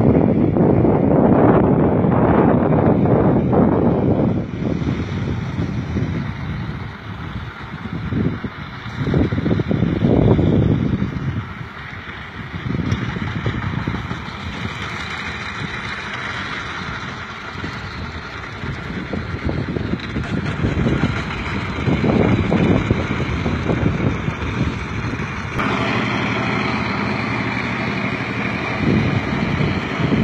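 Wind buffeting a phone microphone outdoors: loud low rumbling gusts that swell and fade every second or two over a steady outdoor hiss.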